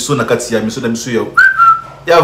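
A man's speech, then a single whistled note held for about half a second in the second half, stepping down slightly in pitch as it starts and then holding steady.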